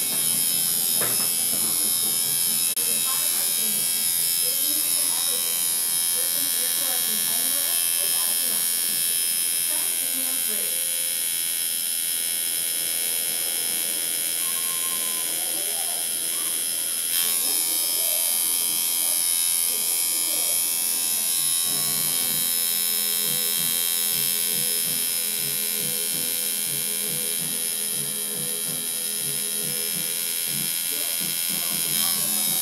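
Tattoo machine buzzing steadily as it lines an outline into skin.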